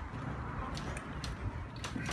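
Footsteps while walking, heard as a few short sharp ticks about half a second apart over a low steady rumble.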